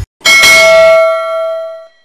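A single bell-chime sound effect, one ding that rings out and fades away over about a second and a half. It marks the click on a subscribe button's notification bell.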